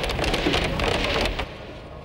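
Loud, dense rushing noise full of fine crackle, like heavy rain, that cuts off abruptly about one and a half seconds in, leaving faint low sustained music.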